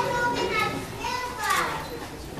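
Children's voices talking and calling out, with no clear words.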